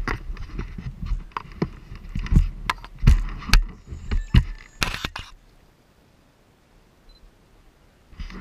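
Handling noise on a body-worn action camera: irregular sharp knocks and clicks with scraping and low gusts of wind on the microphone, stopping about five seconds in.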